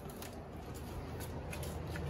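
Faint light clicks and rustling from someone moving through a back doorway, over a low steady hum.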